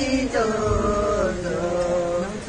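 A group of women singing a slow, chant-like cradle-ceremony song together, in long drawn-out notes that bend gently in pitch.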